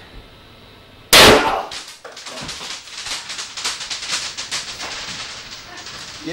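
A bottle holding hydrochloric acid and aluminium foil bursts with one sharp, very loud bang about a second in, blown apart by the hydrogen gas pressure built up inside it. Several seconds of rapid crackling follow.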